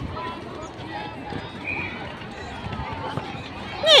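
Background chatter of many people talking at once across open outdoor netball courts. Near the end a nearby voice calls out loudly.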